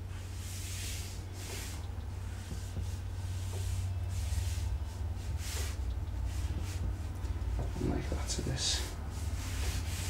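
Felt-tip marker drawing on paper: irregular short hissy strokes, one after another, as lines are inked in. A steady low rumble runs underneath.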